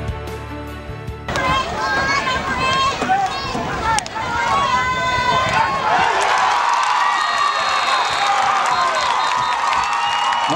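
Music cuts off about a second in, giving way to a crowd of many voices shouting and cheering that grows louder about halfway through.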